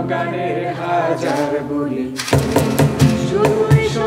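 Male and female voices singing a Bengali song together, accompanied by acoustic guitar. The cajon drops out at first and comes back in with steady strikes a little past halfway.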